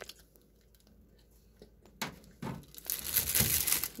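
A bite being torn from a slice of pizza and chewed close to the microphone: about two seconds of quiet, then crackly tearing and crunching sounds that grow louder, loudest just before the end.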